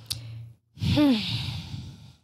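A person draws a breath, then lets out a long, heavy sigh whose voiced pitch falls as it trails off.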